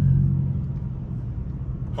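Dodge Scat Pack's 6.4-litre HEMI V8 droning steadily at cruise, heard from inside the cabin, growing a little quieter.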